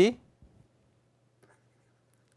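Faint scratches and taps of a stylus writing on a tablet screen, a few small ticks over a low steady electrical hum, with the tail of a spoken word at the very start.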